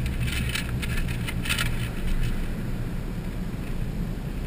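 Car driving slowly, heard from inside the cabin: a steady low engine and road rumble, with a few brief rattles in the first half.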